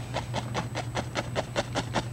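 An oil-loaded fan brush tapping rapidly against a stretched canvas, about seven taps a second, dabbing in small distant evergreen trees. A steady low hum runs underneath.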